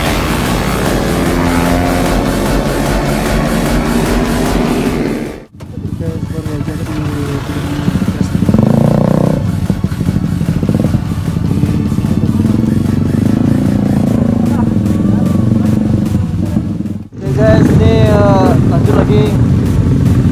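Several motorcycle engines running and revving, mixed with people's voices and background music. The sound drops out abruptly twice, about five seconds in and again near the end, and is loudest in the final few seconds.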